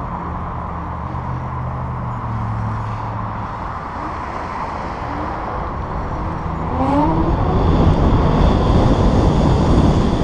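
Electric bike on the move: a low steady hum, then a whine that rises in pitch as the bike speeds up from about four seconds in. From about seven seconds, wind buffeting the microphone grows louder and covers it.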